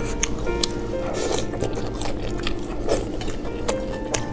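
A person biting and chewing a mouthful of tofu-skin strips and onion, sharp little clicks scattered through, over background music with held notes.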